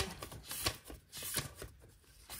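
Loose-leaf planner refill pages being handled and leafed through: a few short, crisp paper rustles and flicks.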